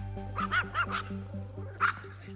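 A small dog, a Pomeranian, yips about four times in quick succession about half a second in, then once more, louder, near the end. Background music fades out underneath.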